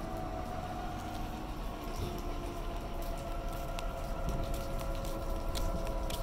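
Forklift engine running steadily while it moves a boat on a wheeled dolly over asphalt, with a steady whine over a low rumble. A few light clicks or knocks come in the second half.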